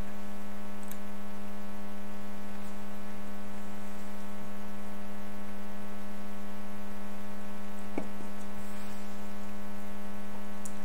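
Steady electrical mains hum in the recording, a low buzz with many overtones that does not change. A single faint click comes about eight seconds in.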